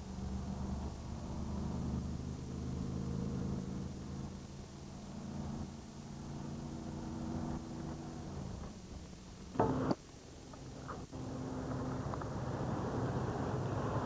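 Steady low drone of a motorhome's engine and road noise heard inside the cab while cruising on a highway. About ten seconds in there is a short, loud thump, and after it the drone gives way to a rougher, more even rushing noise.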